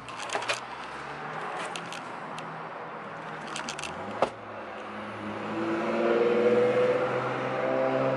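Clicks and rattles of a front door and its lever handle being worked to pull it shut, with one sharp knock about four seconds in. Soft, sustained music chords come in over the second half and grow louder.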